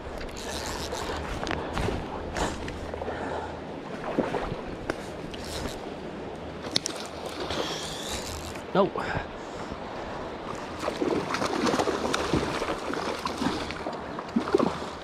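River current rushing and sloshing around a wading angler, with scattered rustles and clicks from a gloved hand handling fly line and reel.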